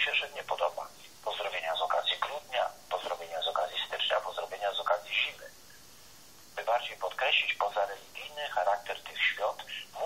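A person speaking, the voice thin and narrow as over a telephone line, with a pause of about a second midway.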